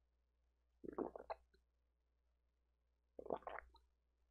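A person gulping a drink from a bottle close to the microphone: two short gulps, one about a second in and another near the end.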